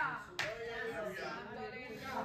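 A single sharp slap about half a second in, then a faint voice speaking quietly in the room.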